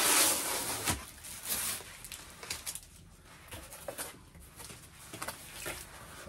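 A shipping package being opened by hand: a loud rustle in about the first second that ends with a click, then quieter rustling and small clicks of handling.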